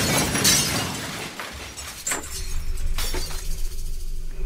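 Glass shattering effect: breaking window glass, dying away over the first two seconds, then a few scattered clinks of falling shards.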